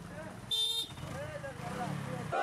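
A motorcycle horn beeps once, short and buzzy, about half a second in, over the low running of the motorcycle's engine and a crowd's scattered voices.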